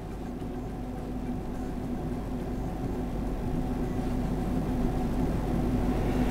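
A steady low hum over a soft noise haze, slowly growing louder.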